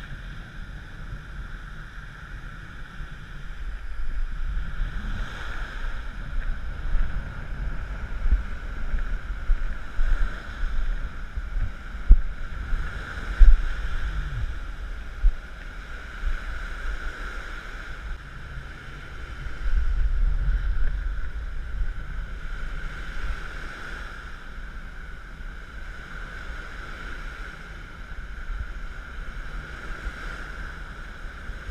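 Wind buffeting a GoPro microphone in uneven gusts, a few of them loud, over the steady wash of surf breaking on the beach.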